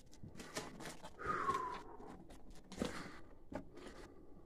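Footsteps crunching over loose, dry rubble on a rock floor, several uneven steps, with a brief falling squeak-like tone a little over a second in.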